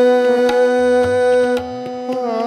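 Harmonium and tabla playing Hindustani classical accompaniment: the harmonium holds one steady note, loud until about one and a half seconds in, while the tabla plays sharp strokes and deep bass-drum strokes.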